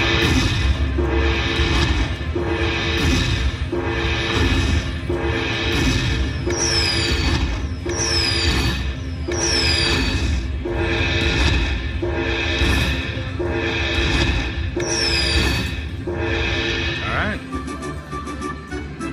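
Dragon Link slot machine's bonus-tally music: a repeating chime phrase about once a second while the win meter counts up the collected bonus coins, with a falling whoosh several times in the middle and once more near the end.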